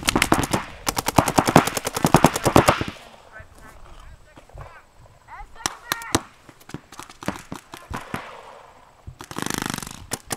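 Paintball markers firing in fast strings of shots for the first three seconds, then scattered single shots and short strings. A short burst of rushing noise comes near the end.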